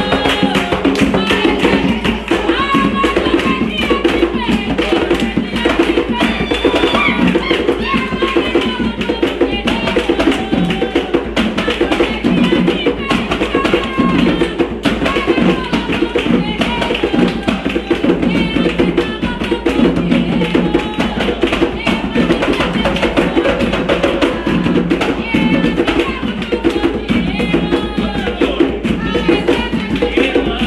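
Umbanda ritual music: hand drums playing a steady rhythm under group singing of a ponto, with hand clapping.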